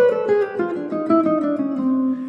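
Clean semi-hollow electric guitar playing a quick single-note line with chromatic approach notes. The picked notes step down in pitch and settle on a held lower note near the end.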